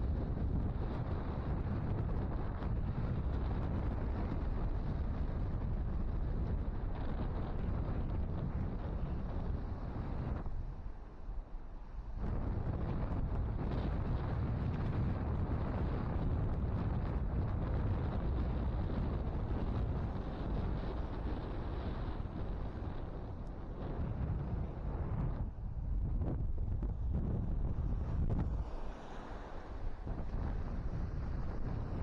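Wind buffeting the microphone, heavy and low, with waves breaking on the shore beneath it. The wind eases briefly about ten seconds in and again near the end.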